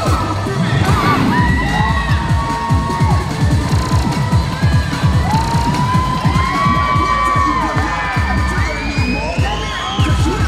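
Cheer routine music mix with a fast, dense beat, under a crowd cheering and children shouting and whooping.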